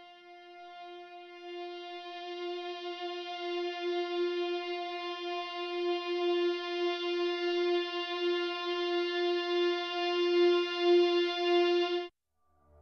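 An eBow guitar drone holding a single sustained note on F. It swells in slowly over the first few seconds, then holds with a slight wavering in level, and cuts off abruptly at the end when playback is stopped.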